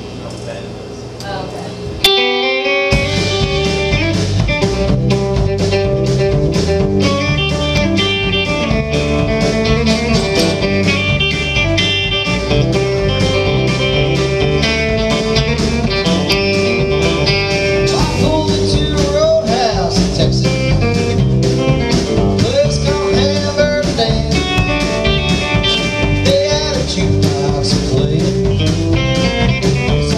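Live country band kicking in about two seconds in with an upbeat honky-tonk groove: electric guitar lines over acoustic rhythm guitar, bass and a steady drum beat.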